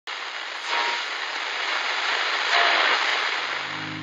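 Old radio hissing with static, with a couple of faint brief whistles in the noise. Near the end a low keyboard chord fades in under the static.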